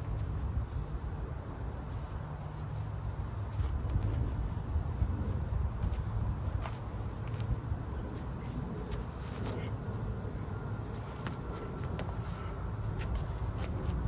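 Steady low outdoor rumble with a few faint, scattered clicks and taps.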